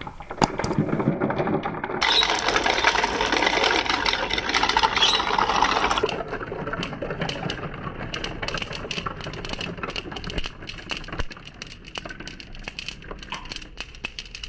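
Glass marbles rolling and rattling down a cardboard spiral marble run: a loud, dense clatter for about four seconds, then a long run of sharp separate clicks as the marbles knock against each other and drop out onto the tile floor.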